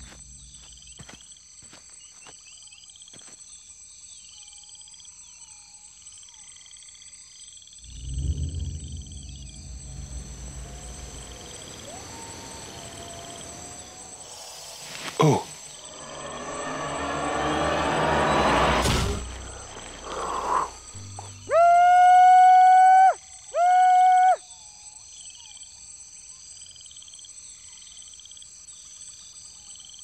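Night swamp chorus of insects and frogs: steady high buzzing with repeated chirps. Past the middle a whooshing swell rises. Then come two loud, steady, high-pitched tones, one long and one short, the loudest sounds here.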